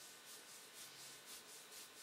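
Very faint soft rubbing, coming in a few brief swells over near silence.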